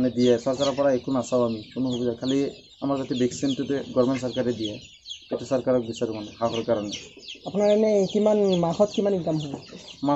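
Many farm chickens clucking and cheeping steadily in a poultry shed, under a man talking.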